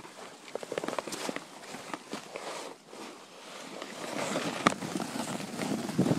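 A hiker's footsteps on the trail: irregular scuffs and crunches mixed with clothing and handling rustle, a little louder in the second half, with one sharp click near the end.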